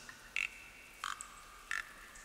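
Quiet, evenly spaced short blips in the backing of an ambient electronic track, about three in two seconds.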